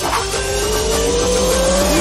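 Intro jingle music with a steady low beat under a rising synthesized sweep effect that climbs slowly in pitch like a revving whine. Near the end it breaks into several quickly falling sweeps.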